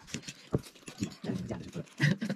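Noodles being slurped and chewed, with a string of short clicks from forks against plates.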